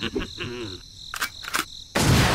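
Cricket chirping as a steady high trill, with a short laugh in the first second and two sharp clicks near the end.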